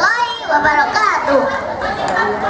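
Children speaking into a microphone, their voices carried over a PA.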